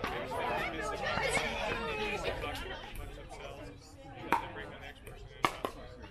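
Background voices chatting, then sharp, hollow pocks of pickleball paddles striking the plastic ball: one a little over four seconds in and two in quick succession near the end.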